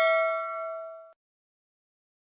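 Bell-like 'ding' notification sound effect for a clicked subscribe-bell icon, a chime of several steady pitches ringing and fading, then cutting off abruptly about a second in.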